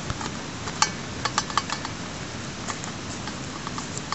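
Light metal clinks and taps of a bread pan knocking against the aluminium pot it sits in, as dough is pressed into the pan by hand. There is a quick run of clicks about a second in and a few scattered taps near the end.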